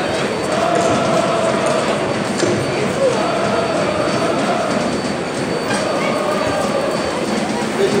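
A large football crowd singing together in the stands: long held chant notes, repeated over and over, above a steady roar of many voices.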